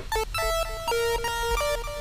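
Logic Pro X's 'Chip Tune Lead' synthesizer patch playing a quick melodic run of short notes, a few held a little longer, as the patch is tried out.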